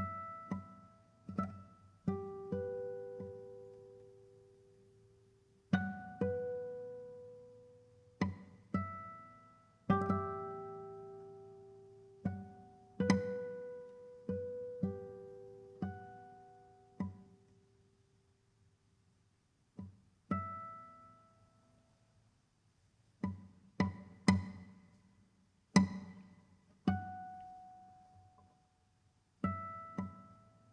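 Solo classical guitar playing sparse, separate plucked notes, each left to ring and fade, with clear silences between them, the longest about two-thirds of the way through.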